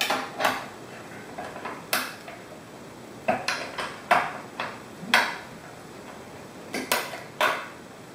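Sharp metallic clinks and clanks, about ten of them at irregular intervals, from the aluminium rails and bolt hardware of a homemade screen-mesh stretcher being adjusted by hand.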